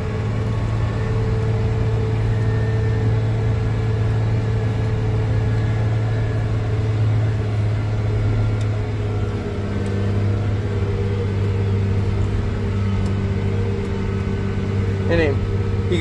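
Tractor engine running steadily while the tractor is driven, heard from inside the cab as a low, even hum. A man's voice comes in near the end.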